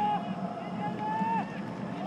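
Two long shouted calls from players on the pitch, one at the start and one about a second in, each held and then trailing off. They sit over the steady open-stadium ambience of a football match.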